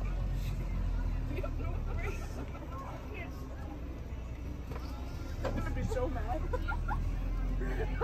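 Golf carts passing slowly, with a low steady motor hum and faint voices of people around them.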